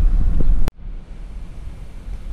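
Low rumble of road and engine noise from inside a Chevrolet Tahoe's cabin while driving, with its 5.3-litre V8 running. It cuts off with a click under a second in, leaving a much quieter low hum.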